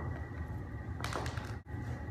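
Quiet room with a low steady hum, a brief soft rustle about a second in and a faint tap near the end.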